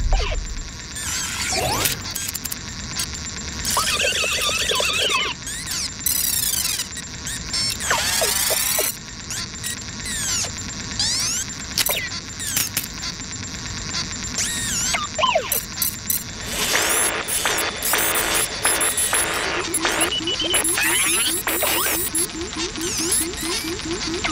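Animated-cartoon soundtrack of music and sound effects: many quick whistle-like glides up and down, boings and clatter, with a rapid even ticking through the last third.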